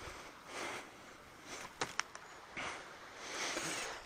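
Faint rustling and scuffing with a couple of sharp clicks about halfway through: footsteps and brushing against dry bark and scrub as someone climbs onto a fallen tree.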